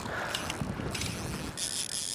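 Hooked tarpon thrashing and splashing at the surface, heard as a steady rough splashing noise. A high hiss joins near the end.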